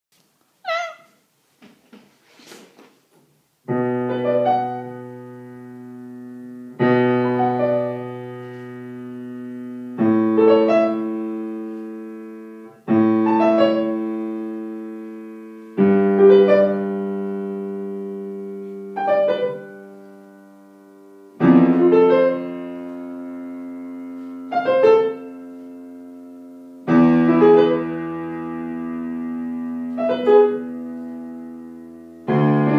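Acoustic piano playing a slow original piece: a sustained chord struck about every three seconds, each answered by a few short higher notes, and ringing on as it fades.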